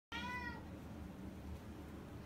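A domestic cat gives one short meow, about half a second long, right at the start, followed by a low steady background hum.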